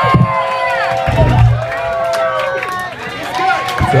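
Crowd on stage at a punk rock show shouting and singing together over the loud close of a live band's song, with a few heavy low drum-and-bass hits.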